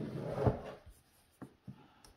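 A hand rubs briefly over a Microsoft Surface Laptop, then two faint key clicks sound about a second and a half in as keys on its built-in keyboard are pressed. The keyboard is being tested and does not respond, since its drivers are missing.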